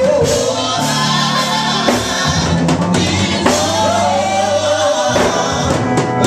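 Live gospel music: singers on hand microphones over an amplified band with electric guitar and drums.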